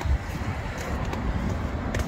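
Steady outdoor street noise with wind rumbling on the microphone of a handheld camera.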